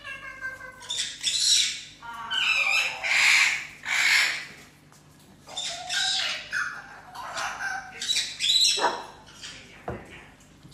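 Parrot squawking repeatedly: a series of loud, harsh calls with a brief lull about halfway through.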